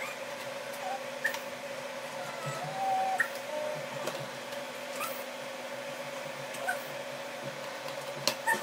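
Light clicks and taps of small display pieces being handled and dropped into a wooden tray, over a steady low hum.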